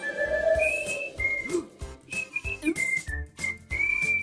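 A whistled tune in short, held high notes with small slides between them, over cartoon background music with low thuds.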